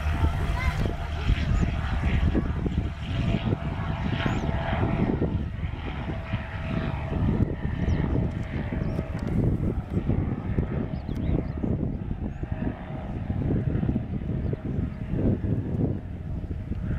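Softex V-24 light propeller aircraft flying low past and climbing away, its engine and propeller drone steady, the engine note weakening after about ten seconds as it gains distance.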